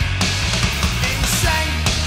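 Rock band recording playing at full volume: regular drum hits and a steady bass line under guitars, with a bending melodic line above.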